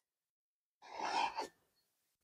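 A single short breathy sigh about a second in, with silence before it.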